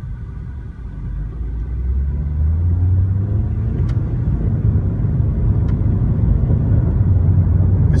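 The naturally aspirated 2.0-litre four-cylinder of a 2012 Mitsubishi Lancer GT-A with a CVT, heard from inside the cabin as the car accelerates. Its drone rises in pitch and gets louder over the first few seconds, then holds a steady note.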